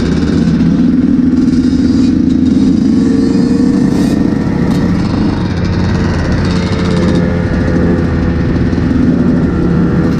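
Dirt bike engines running while riding along, the nearest engine loud and close, its note holding fairly steady with small rises and falls.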